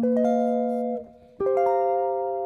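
Electric guitar playing two rolled chords: the first rings for about a second and is cut short, and the second comes in about a second and a half in and rings on.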